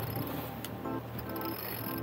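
Background music with short, soft notes; no speech.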